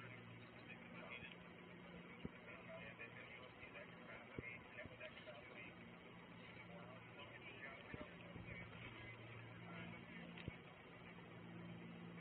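Faint, indistinct voices over a low steady hum, with a few small sharp clicks.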